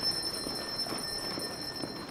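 Faint steady high-pitched ringing from the public-address system, left after the announcer's voice stops, over a low background of faint scattered noise.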